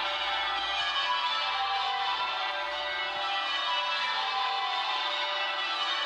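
Westminster Abbey's church bells ringing a continuous peal, many bell tones overlapping, played back through a tablet's small speaker, with little bass.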